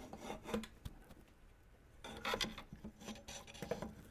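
Faint rubbing and scraping of metal printer parts being handled, as the Ender 3's X-axis gantry is worked onto the aluminum frame extrusions. The sound is quieter for a moment, then busier with small clicks from about halfway through.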